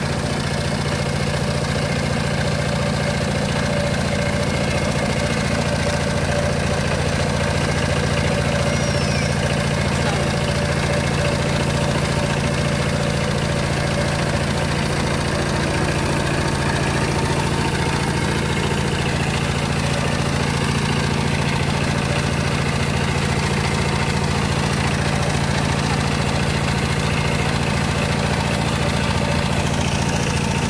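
Power tiller's single-cylinder diesel engine running steadily as the tiller drives along, its pitch and level holding constant.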